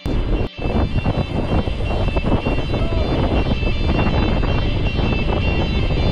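Wind buffeting the microphone of a bike-mounted action camera while cycling on the road: a loud, steady rush of wind noise that starts suddenly, with a brief drop about half a second in. Background music plays faintly underneath.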